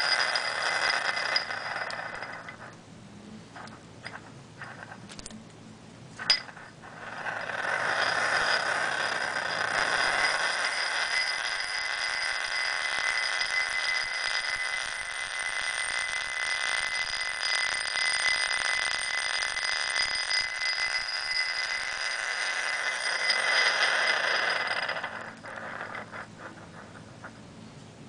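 A steel ball spinning round inside a glass bowl, driven by the rotating field of a pulse-driven toroidal coil: a steady whirring rattle with a high ringing note. It dies away for a few seconds, then a sharp click, and it picks up again and runs steadily until it fades a few seconds before the end.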